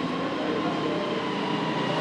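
Steady background noise with a faint hum through it, even in level throughout.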